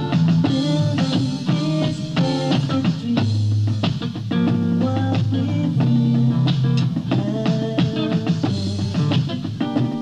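Guitar and drum kit playing a rock song together, with a steady beat of drum hits under shifting guitar notes.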